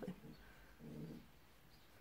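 Near silence: room tone, broken about a second in by one short, low hum, like a murmured "hm".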